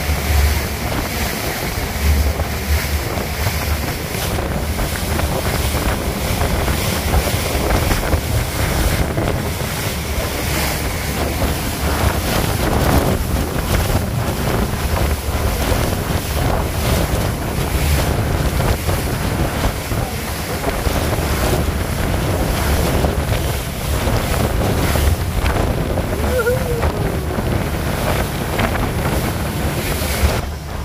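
Speedboat running fast through the sea: a steady rush of water and spray along the hull, with heavy wind buffeting on the microphone.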